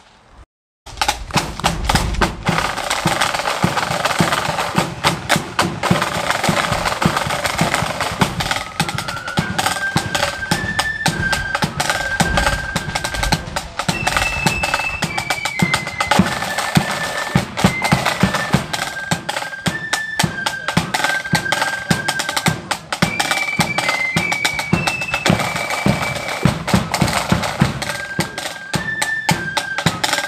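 Marching flute band playing: side drums and bass drum start about a second in with a rapid marching beat and rolls. About eight seconds in, the flutes join with a high melody played in unison over the drums.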